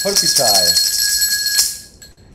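Hand-held gourd rattle shaken rapidly for about two seconds, a dense bright shaking that stops abruptly near the end, with a thin steady ringing tone running through it.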